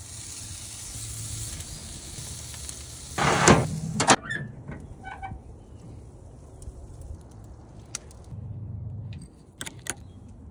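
Raw skirt-steak pinwheels sizzling as they are set on a grill grate over hot coals: a steady hiss that stops about four seconds in. Two loud bursts of noise come a little after three and four seconds in, and a few light clicks near the end.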